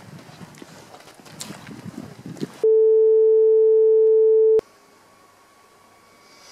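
A loud, steady electronic beep tone at one pitch starts abruptly about two and a half seconds in, holds for about two seconds, and cuts off suddenly. Before it there is low background noise with scattered small clicks. After it there is faint room tone.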